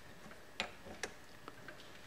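Keyed drill chuck being turned with its chuck key, the key's teeth clicking against the chuck's gear ring a few times, about half a second apart.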